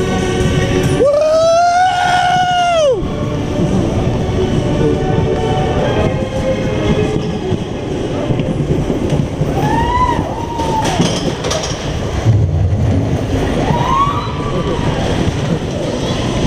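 Space Mountain roller coaster train running through the dark along its track, a steady loud noise, with a rider's long high scream about a second in and two shorter screams or whoops later on.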